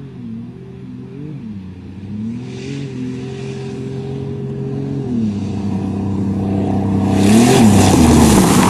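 Two cars, a turbocharged Volvo 760 and a Buick Regal with a 3.8 V6, racing flat out across a field, their engines running at high revs with steps in pitch and growing louder as they approach. Near the end one car passes close with a loud rush of engine, tyre and dirt noise.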